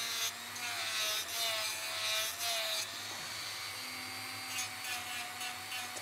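Dremel 3000 rotary tool at speed setting 6 with a coarse 60-grit sanding band, sanding the edge of a wood-and-resin blank. The motor whines steadily and dips slightly in pitch as the drum bites. Gritty sanding is heaviest in the first three seconds, then lighter touches follow.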